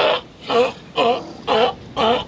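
California sea lion barking in a steady series of loud, rhythmic barks, about two a second.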